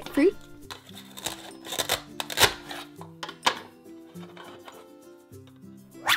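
Velcro tearing and plastic clicking as a velcro-joined plastic toy fruit is cut apart with a plastic toy knife on a plastic cutting board. Short crackly rips and clicks bunch up from about one second in to past three seconds in, over steady background music.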